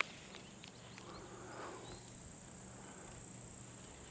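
Faint outdoor ambience: a steady, high-pitched insect drone, with a few light ticks near the start.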